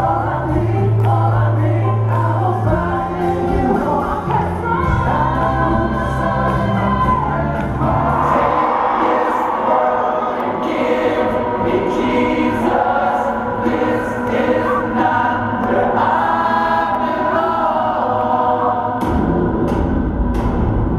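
Live band music in an arena with singing. About halfway through the bass and drums drop out, leaving held choir-like voices and chords, and the low end comes back shortly before the end.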